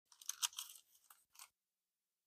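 Paper crackling and rustling as hands press a sheet down over a glued tab, a few brief crackles in the first second and a half, then it stops.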